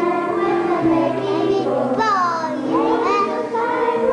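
Young children singing a carol over accompaniment that holds steady notes. About two seconds in, a child's voice swoops loudly down in pitch, then slides back up a second later.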